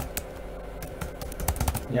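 Typing on a computer keyboard: irregular runs of key clicks as a password is entered twice.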